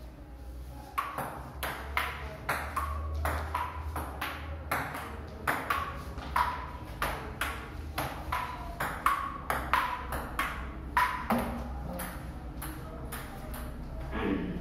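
Table tennis rally: the ball clicking in quick alternation off the paddles and the table, about three hits a second. It starts about a second in and stops a couple of seconds before the end when the point is over.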